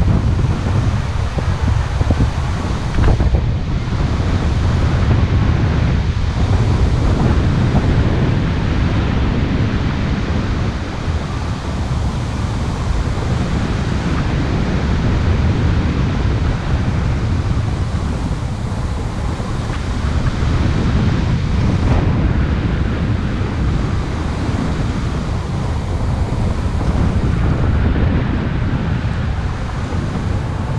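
Wind buffeting the microphone of a camera on a paraglider in flight: a loud, steady, deep rush of wind noise with no engine.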